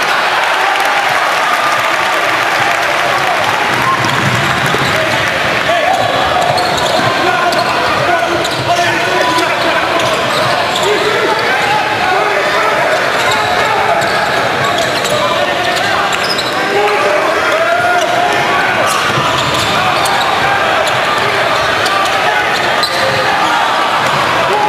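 Live basketball game sound in an indoor arena: a basketball bouncing on a hardwood court under a steady wash of crowd voices.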